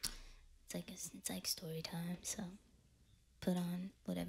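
Quiet speech: a woman talking softly into a microphone in short, halting phrases, with a pause of about a second near the end.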